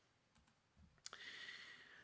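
Near silence with a few faint clicks, then a soft hiss from about a second in.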